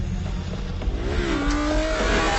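Futuristic light cycle engine sound effect: a synthetic whine that dips and then levels off in pitch about a second in, over a rising rush of noise, with the low score fading beneath it.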